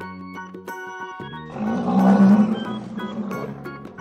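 Rhinoceros call sound effect over steady background music: one loud, low, noisy call begins about one and a half seconds in and lasts about a second and a half.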